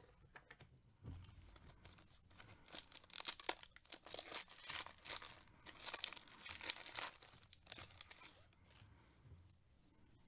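Foil wrapper of a 2021 Donruss baseball card pack being torn open and crinkled by hand. The crackly tearing starts a couple of seconds in, is loudest through the middle and dies down near the end.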